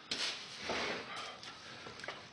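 Rubbing and scuffing of gloved hands wiping a workbench top, with a few light knocks of handling, loudest in the first second.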